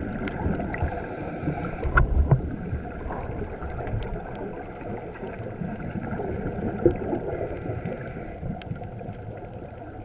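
Muffled underwater sound of a scuba diver breathing through a regulator, recorded inside a GoPro housing. Exhaled bubbles rumble and gurgle, loudest about two seconds in, and a soft high hiss comes a couple of times, with a few sharp clicks.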